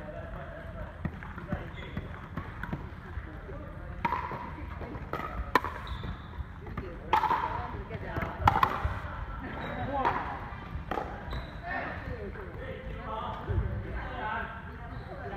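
Pickleball rally: a series of sharp pops from a paddle striking the hard plastic ball, with the ball bouncing on the wooden court, most of them between about four and eleven seconds in, ringing in a large sports hall.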